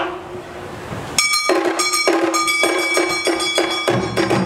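Awa Odori festival music starting suddenly about a second in: a quick, even metallic clanging beat of about four strikes a second, with sustained high ringing tones over it.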